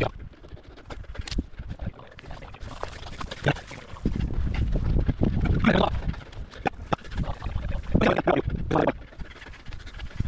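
A rock climber's hard breathing and grunts of effort while pulling through moves, coming in several short bursts, over a low wind rumble on the head-mounted microphone.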